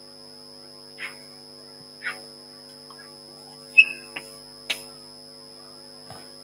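Steady electrical mains hum with a faint high whine, over which chalk works on a blackboard: two short soft scrapes about one and two seconds in, then a sharp tap near four seconds and a couple of lighter taps after it.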